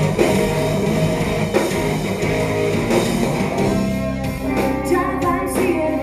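Live rock band playing loud in a club, with electric guitar and drum kit. After about three and a half seconds the dense full-band sound thins out to a held low note with a sparser texture above it.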